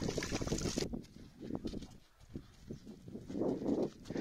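Water splashing as hands scoop and fling it out of a shallow puddle, cutting off abruptly about a second in. After that, softer irregular thumps and rustling.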